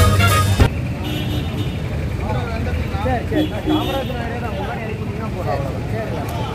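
Brass-band music that cuts off abruptly about half a second in, giving way to busy street ambience: people talking around the car over a steady traffic hum.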